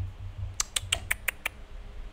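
A quick run of about seven sharp, light clicks in a little under a second, like tapping or typing, with a few dull low bumps around them.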